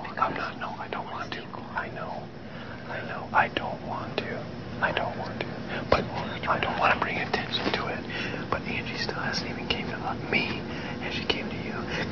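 Two people whispering to each other in a hushed conversation.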